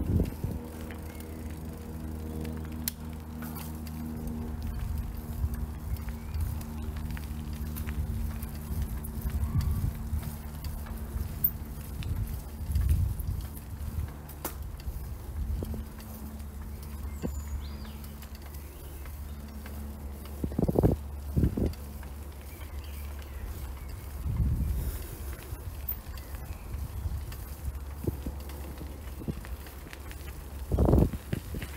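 Footsteps on a gravel towpath, with a steady low diesel drone from a moored narrowboat's engine that fades out about two-thirds of the way through. A few heavier thumps come near the end.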